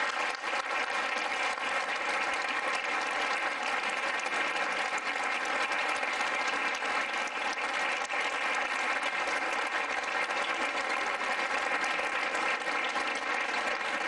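Audience applauding: steady, sustained clapping from a seated crowd and the people on stage.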